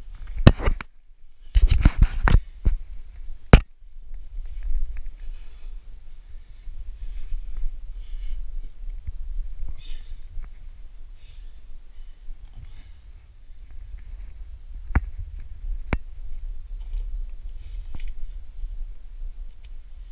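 Climbing noise picked up by a body-worn camera: several loud knocks and bumps against the fig's woody roots in the first few seconds, then a low rumbling of handling noise with a couple of sharp clicks later on.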